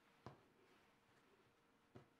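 Near silence: faint room tone with two soft taps, one about a quarter second in and one near the end, from hands laying dough strands on a marble countertop.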